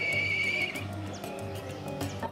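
Black kite giving its whinnying call, a high quavering whistle that stops a little under a second in, over background music.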